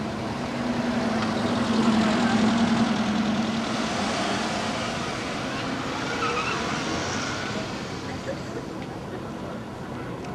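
A car driving past close by, its engine hum swelling about two seconds in and then slowly fading.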